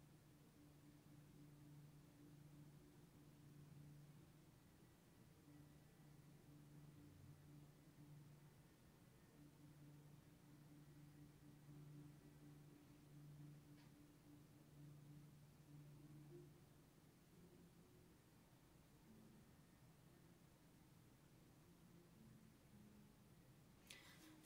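Near silence, with a faint recorded bassoon line playing back: sustained low notes in phrases that stop about two-thirds of the way through. One faint click about halfway.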